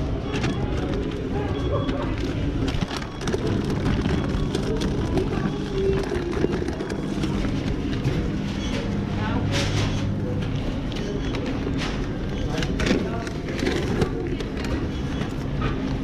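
Nylon insulated delivery backpack being handled close to the microphone: fabric rustling, scraping and small knocks throughout, over indistinct background voices.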